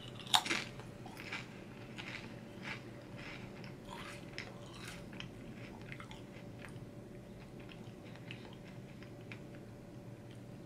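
A crunchy bite into a barbecue potato chip topped with a green sour gummy, about half a second in, followed by chewing with faint crunches that thin out over the following seconds.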